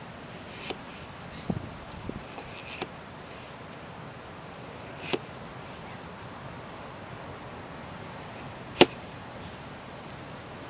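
Large kitchen knife slicing a raw potato on a hard plastic cooler lid: about half a dozen irregular knocks as the blade cuts through and strikes the lid, the loudest one near the end, over a steady background hiss.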